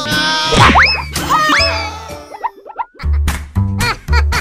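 Cartoon soundtrack music with comic sound effects: two loud rising glides about a second in, then a sparser stretch of short sliding notes, and the music coming back with a heavy bass beat about three seconds in.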